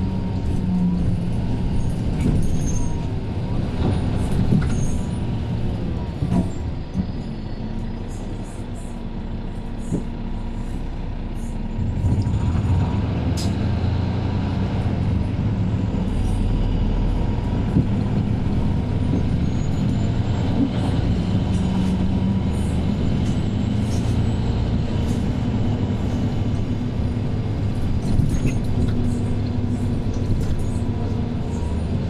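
Inside a Mercedes-Benz Citaro C2 K city bus on the move: its OM936 inline-six diesel and ZF automatic gearbox running under a steady drone, with small rattles and clicks from the cabin. About twelve seconds in, the engine note gets louder and deeper as the bus pulls harder.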